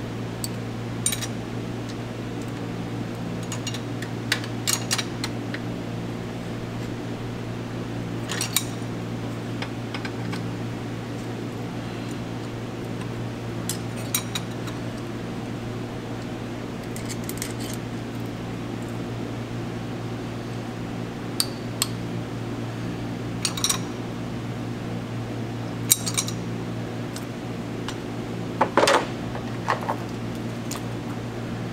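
Metal hand tools clicking and clinking against the valve train of a Paccar MX-13 diesel during a valve adjustment: a dozen or so scattered sharp clinks, the loudest cluster near the end. A steady low hum runs underneath.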